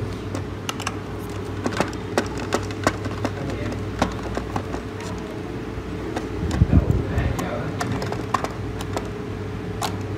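A screwdriver is working screws out of a hard plastic display base, making scattered light clicks and scrapes of metal on plastic over a steady background hum. There is a heavier handling rumble about seven seconds in.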